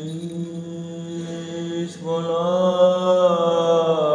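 Greek Orthodox Byzantine chant: a low steady drone (the ison) held under a chanted melodic line. About two seconds in, the chanting voice grows louder and holds a long note.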